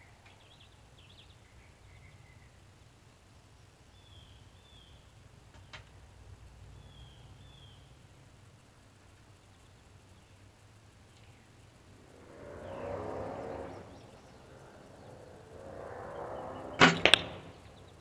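A shot from a 1986 Bear Whitetail II compound bow near the end: two sharp cracks a fraction of a second apart, loud against the quiet. Before it come a few seconds of rustling handling noise, and faint bird chirps twice early on.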